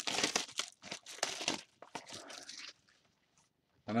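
Plastic shrink wrap on a sealed box of baseball cards crinkling and tearing as the box is handled, in two louder bursts in the first second and a half, then fainter rustling that stops about three seconds in.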